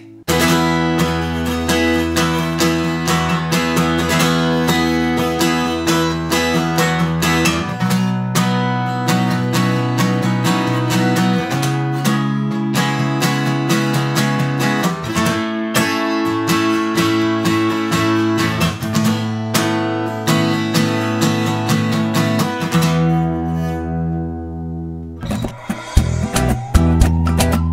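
Cutaway acoustic guitar played in quick, busy strokes through a run of sustained, ringing chords that change every few seconds; the playing dies away shortly before the end.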